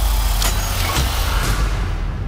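A loud, deep rumble running steadily under a wash of noise, with three sharp hits about half a second apart.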